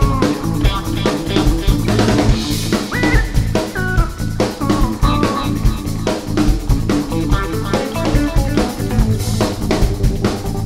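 A band playing an instrumental passage: drum kit with bass drum and snare, electric bass, electric guitar and keyboards, with a lead line stepping and sliding up and down in pitch.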